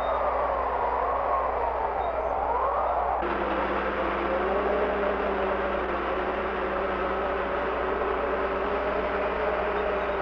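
Heavy snow-plow and snow-blower truck working through drifted snow: a steady rushing roar with a whine that wavers up and down in pitch, changing abruptly about three seconds in to a steadier, lower engine drone.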